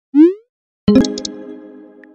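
A short rising swoop, then about a second in a bright chime-like chord that rings out and slowly fades: electronic sound effects laid over a messaging screen.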